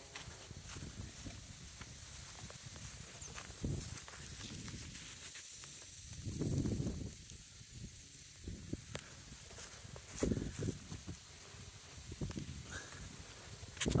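Gusty wind rumbling on the microphone, with light rustling; the gusts swell strongest about six seconds in and again near ten seconds.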